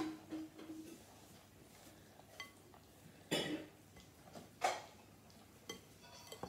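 A spoon stirring thick brownie batter in a glass mixing bowl, with faint scrapes and light clinks against the glass. Two louder short noisy sounds come about three and four and a half seconds in, and a short steady tone sounds in the first second.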